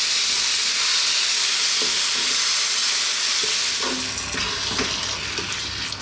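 Chopped tomatoes and fried onions sizzling in a hot wok while a wooden spatula stirs them in. The sizzle is steady and eases a little near the end.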